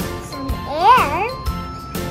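Background music with tinkling, bell-like notes over a steady beat of about two a second. About a second in, a child's voice glides briefly up and down over the music.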